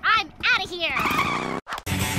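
A cartoon girl laughing gleefully, followed by a short motorbike-and-skid sound effect that slides down in pitch and cuts off abruptly about a second and a half in.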